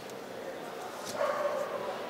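A dog gives one short, steady-pitched cry about a second in, heard over the murmur of voices in the hall.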